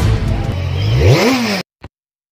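Intro sound effect of an engine revving under a noisy rush, its pitch climbing sharply about a second in, then cut off abruptly, followed by one short blip.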